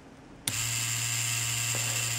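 Cheyenne Thunder rotary tattoo pen's motor switching on abruptly about half a second in and running with a steady buzz at 9 volts and maximum stroke. Fed through a homemade test cable, it starts at a voltage at which it would not start on its original cable, and runs briskly.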